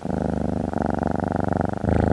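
Calico cat purring close up: a steady, rapid rumble that changes slightly in tone about two-thirds of a second in and again near the end.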